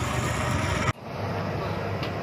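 Tata Hitachi excavator's diesel engine running steadily, with an abrupt cut just under a second in, after which the same engine noise carries on.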